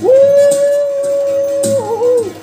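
A single long, high note held steady, which wavers and drops in pitch near the end, as part of the ceremony's music.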